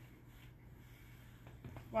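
A few faint clicks as a plastic pressure cooker's lid is unlocked and lifted off, its pressure already released so there is no hiss, over a low steady hum.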